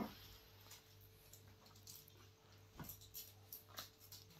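Near silence: a faint steady hum, with a few faint clicks in the second half.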